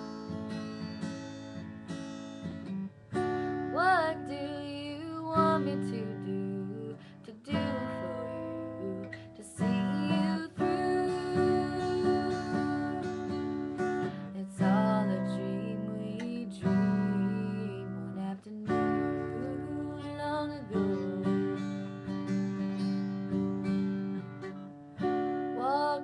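Acoustic guitar strummed in steady chords, with a young woman singing over it in places.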